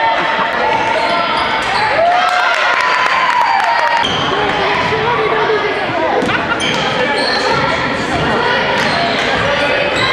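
Basketball bouncing on a gym's hardwood floor during a game, with players and spectators calling out throughout.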